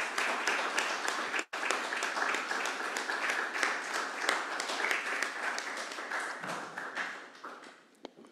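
Audience applauding, a dense patter of many hands clapping that cuts out for an instant about a second and a half in and then dies away near the end.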